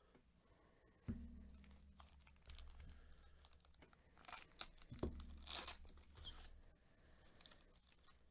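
Plastic wrapper of a 2021 Topps Series 1 baseball card pack crinkling and tearing as it is handled and opened, with the loudest crackling between about four and six seconds in. Two thumps, about a second in and about five seconds in.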